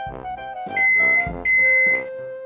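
Microwave oven's end-of-cycle alert: two steady high-pitched beeps, each about half a second long, in the second half, signalling that the set cooking time has finished.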